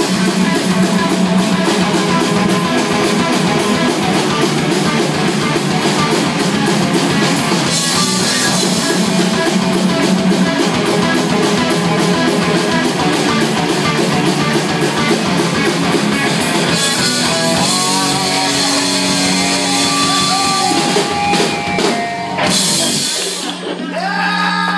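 Live rock band playing loudly: electric guitar, bass guitar and a drum kit with a fast, driving beat. The song cuts off about a second before the end, leaving a steady low amplifier tone.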